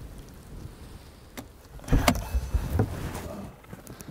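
Car door being handled on a 2008 Porsche Cayman S: a click about one and a half seconds in, a louder thump about two seconds in, then a few softer knocks.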